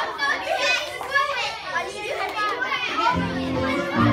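A group of children chattering and exclaiming together, many voices at once. A little after three seconds in, steady low musical notes come in under the voices.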